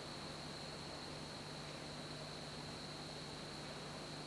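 Homemade pulse motor running very quietly: a faint steady low hum and a thin high whine over hiss, with no bearing rumble or relay ticking.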